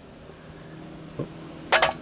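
A few quick metallic clinks near the end as a steel gear from a Victrola VV-35 spring motor is set down on a hard surface, over a faint steady hum.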